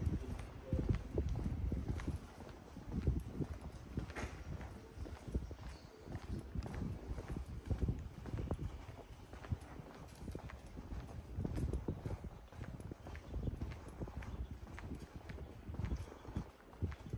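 Footsteps on an asphalt street at a steady walking pace, about two steps a second, heard as low thuds.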